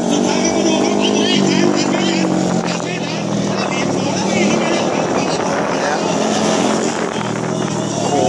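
150 cc racing motorcycles running hard around a track. Their engine note steps down in pitch about a second and a half in and again near the end.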